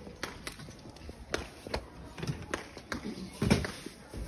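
A thin plastic bag crinkling in irregular sharp crackles as a loaf of bread is bagged by hand, with a few short murmured voices.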